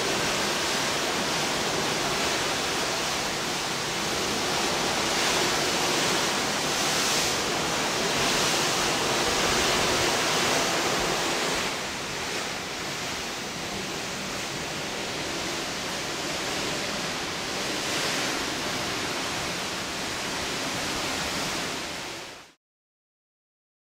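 Steady rushing hiss of background noise in a ship's cabin, with no distinct events. It drops slightly about twelve seconds in.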